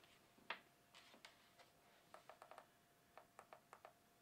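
Faint clicks of buttons and handling on a game caller's handheld remote control, in near silence: one click just after half a second, then quick runs of clicks just past two seconds and again near the end.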